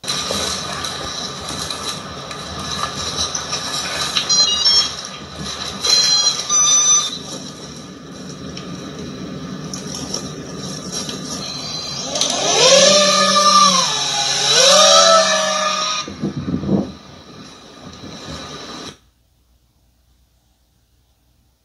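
Soundtrack of drone footage playing from a TV speaker: a steady hiss with a high whine. About twelve seconds in, a louder pitched sound rises and falls twice. The sound cuts off about a second before the end.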